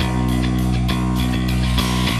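Instrumental passage of an Italian indie rock song, with electric guitars over a steady beat and no singing.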